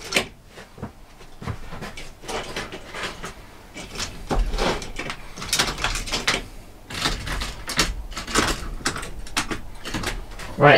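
OO gauge model railway wagons being picked up and moved off the track by hand: irregular small clicks and clacks of plastic and metal rolling stock, several knocks close together in the middle and later part.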